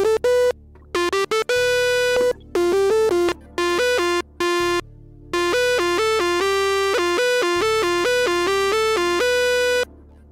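Korg Monotribe's analogue synth voice played from an Arturia MicroBrute keyboard over CV/gate: a run of short buzzy notes jumping between a few pitches, with brief gaps between phrases. The pitch steps straight from note to note without gliding, because the MicroBrute's glide setting does not reach its CV output.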